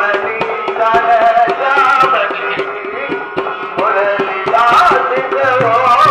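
Live Indian folk music: a dholak drum played by hand at a quick, steady beat of about four strokes a second. A harmonium and a wavering lead melody play over it, and a deeper bass drum tone joins near the end.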